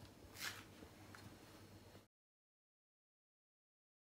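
A wooden spatula brushing and scraping rice on a plate, once and softly about half a second in. Then the sound cuts out to dead silence about halfway through.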